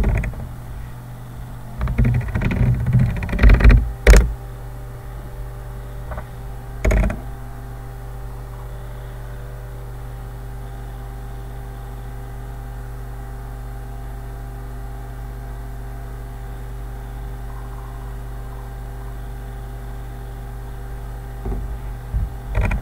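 Steady electrical hum with several faint steady tones, with a cluster of loud knocks and clicks about two to four seconds in and a single short one near seven seconds.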